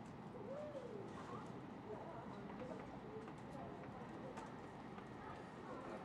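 Quiet station platform ambience: a low steady background with faint, indistinct wavering voice-like calls and a few light clicks.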